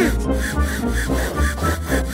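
Cartoon sound effect of a hand air pump being worked fast, a quick run of repeated rasping strokes as a balloon is blown up, over bouncy children's music.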